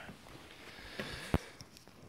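Quiet handling noise: a soft rustle, with two light clicks a little after a second in.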